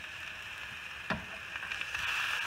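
Fatty ground beef sizzling in a hot nonstick frying pan, a steady hiss, with a single sharp click about a second in.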